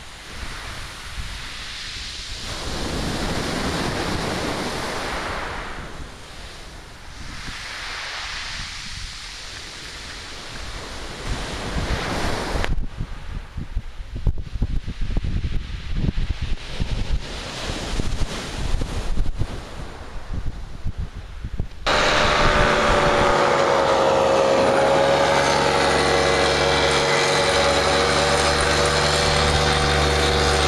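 Waves washing on a shingle beach, with wind on the microphone, the noise swelling and fading. About two-thirds of the way through it cuts suddenly to the loud steady drone of a paramotor's propeller engine.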